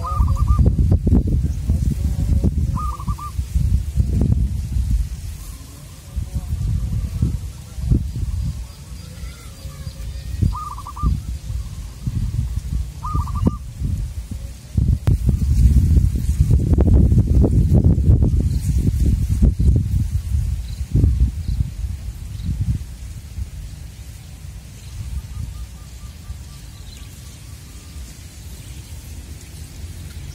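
Wind gusting across the microphone as a low rumble that rises and falls, strongest about halfway through. Over it come four short bird calls: at the start, about three seconds in, and twice around eleven to thirteen seconds in.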